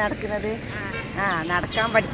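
Speech: people talking in short phrases, over a low steady rumble.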